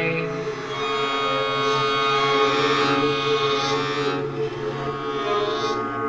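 Layered, multi-tracked violins playing sustained notes over a steady low held note.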